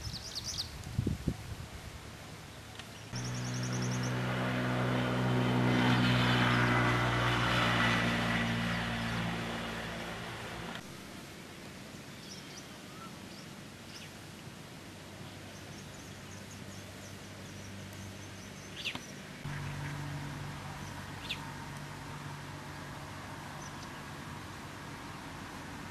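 A motor vehicle's engine drones with a low steady hum, swelling and fading over several seconds in the first half, and a lower engine hum returns later. Birds chirp briefly now and then.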